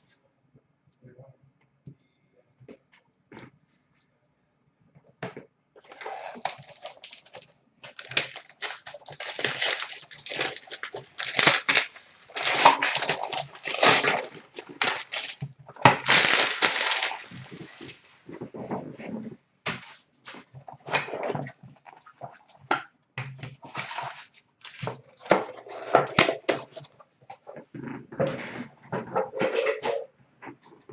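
Clear plastic shrink wrap crinkling and tearing as a sealed box of hockey cards is unwrapped, with a few light clicks of handling before it. The rustling starts about six seconds in and comes in dense, irregular bursts.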